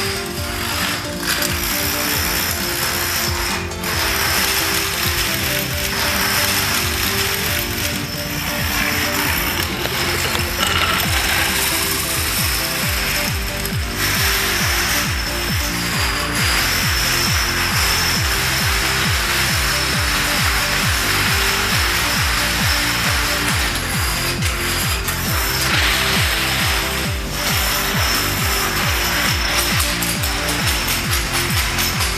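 Plastic dominoes toppling in long chains and fields, making a dense, continuous clatter of small clicks.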